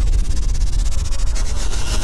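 Sci-fi energy sound effect: a steady deep rumble under a fast, hissing electric crackle.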